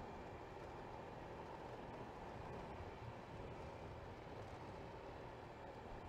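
Faint, steady running noise of a Honda Vario 125 scooter cruising on a paved road: engine hum mixed with road and wind noise, picked up by a handlebar-mounted action camera.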